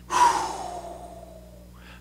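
A man's long audible exhale, a sigh-like breath out that starts loud and fades away over about a second and a half.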